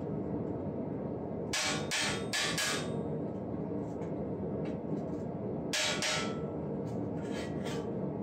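A hammer taps a small chisel or punch along the raised rib of a steel breastplate, cutting its decorative roping. There is a quick run of four sharp metallic strikes, then lighter taps, then two more sharp strikes, with more light taps near the end.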